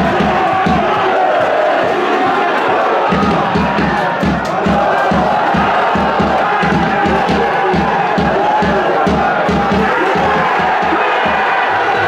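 Football stadium crowd chanting and cheering, carried by a steady low drum beat of about three to four strokes a second that drops out briefly early on and then resumes.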